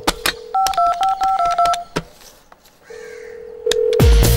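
Desk telephone on speakerphone: a dial tone, then a quick run of touch-tone keypad beeps as a number is dialled. A click comes about two seconds in, and a steady line tone returns near the end.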